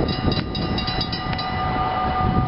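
Electric passenger train passing through a level crossing: a steady low rumble with irregular clicks of wheels over the rails and a steady high hum.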